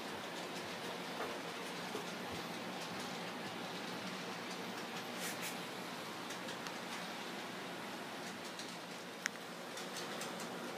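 Steady faint room hiss with a few small clicks, the sharpest one near the end.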